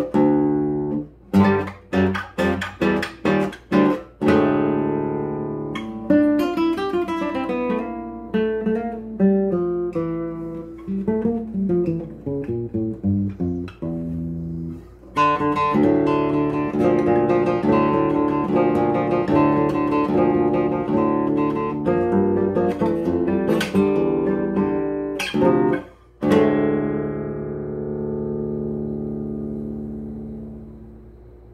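Solo classical guitar played fingerstyle: a string of short, detached chords, then running melodic passages and a fuller, denser section. After a brief break near the end, a final chord is left to ring and slowly fade.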